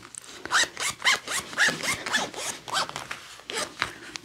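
A zipper being pulled back and forth in a quick run of short zips, about three a second.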